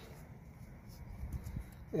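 Faint handling sounds as a gloved hand moves a spare string-trimmer gear head against the trimmer's shaft, with a couple of soft knocks about one and a half seconds in.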